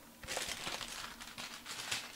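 Faint, irregular crinkling and rustling of packaging being handled.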